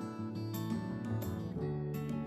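Instrumental background music with guitar, notes struck at a steady pace.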